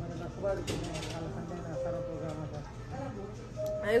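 Restaurant dining-room background: indistinct chatter of other diners with faint background music, with a few short sharper sounds about a second in.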